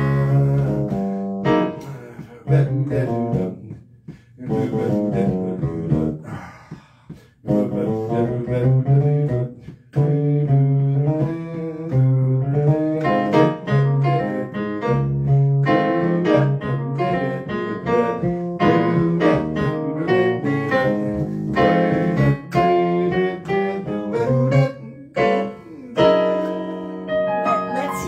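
Instrumental music played on an electronic keyboard: a melody of held, sometimes wavering notes over low bass notes, with a few brief pauses early on.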